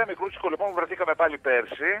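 Speech only: a man talking over a telephone line, his voice thin and narrow-band.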